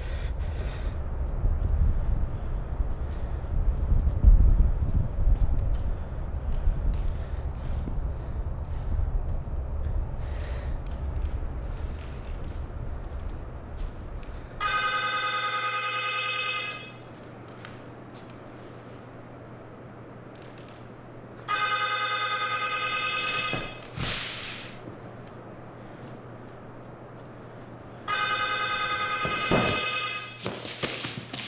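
A telephone ringing three times, each ring about two seconds long with a pause of several seconds between them, over a steady low hum. Before the first ring, a deep low rumble fills the first half and stops suddenly.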